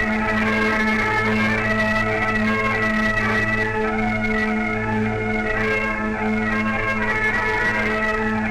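A band of Great Highland bagpipes playing a tune together: a melody on the chanters over the unbroken steady hum of the drones.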